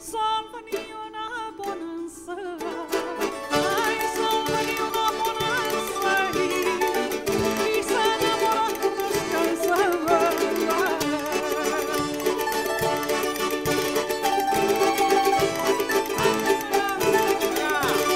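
Live folk band playing a jota: plucked bandurria and cuatro with accordion. The music is sparse for the first three seconds or so, then the full band comes in with a steady percussion beat.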